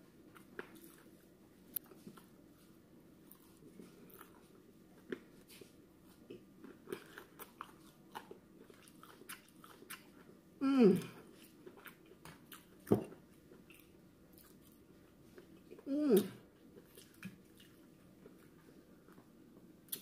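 Close-up chewing of crispy fried fish, with many small crunches and wet mouth clicks. Two short falling hums of enjoyment come about 11 s and 16 s in, and there is a sharp click near the 13-second mark.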